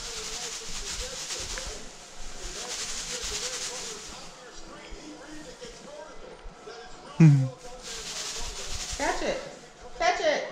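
Television broadcast of a college football game: a steady hiss of stadium crowd noise with faint commentary underneath. The hiss thins out after about four seconds and swells again near the end. A short loud voice cuts in about seven seconds in.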